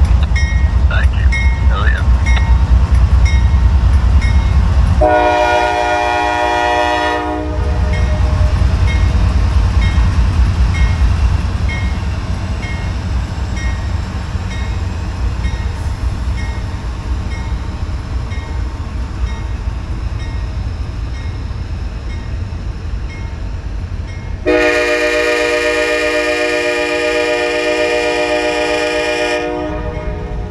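CSX diesel freight locomotives pass close with a heavy rumble that eases as the train cars roll by on the rails. The locomotive's multi-chime air horn sounds twice: a short blast about five seconds in, and a longer blast of about five seconds near the end.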